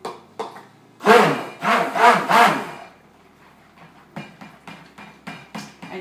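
Handheld immersion stick blender run in three or four short loud bursts in cold-process soap batter, the motor spinning up and down with each pulse, followed by a run of light knocks and taps. The pulsing keeps the lye and oils at a fluid, light trace rather than a thick one.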